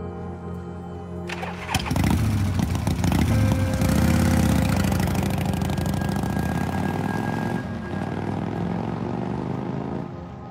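Cruiser motorcycle engine starting about two seconds in, revving up and down, then pulling away and fading, over background music.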